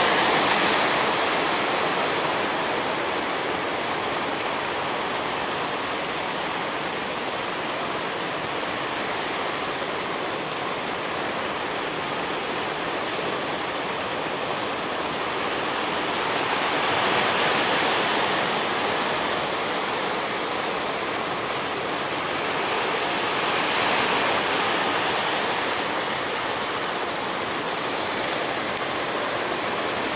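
Ocean surf breaking: a steady rush of waves, swelling louder about a second in and again around seventeen and twenty-four seconds.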